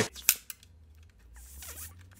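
A sharp plastic click as the card door on the back of a Creative Nomad MP3 player is snapped open, with a smaller click just after, then quiet handling of the player.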